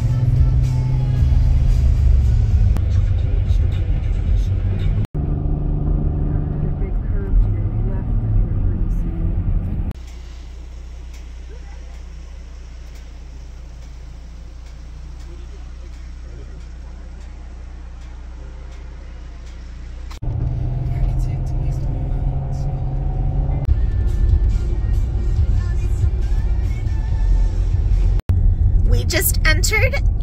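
Car cabin noise while driving: engine and road noise in a run of short edited clips, loud and low, with a quieter steady low rumble for about ten seconds in the middle.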